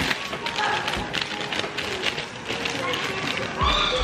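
Resealable plastic grape bag crinkling and crackling as it is pulled open by hand, with a low thump near the end, over background music.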